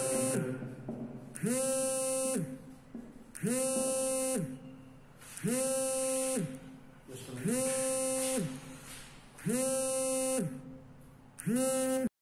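The same pitched electronic note sounded six times, about one every two seconds, each lasting about a second and sliding up at its start and down at its end.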